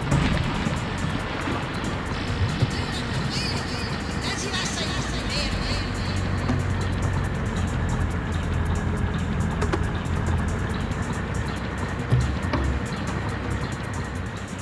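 Ambient dub electronic music: a dense, noisy synthesizer texture over a steady low bass, with warbling high synth glides a few seconds in.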